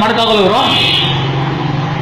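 A man's voice trails off about half a second in, followed by a steady low hum.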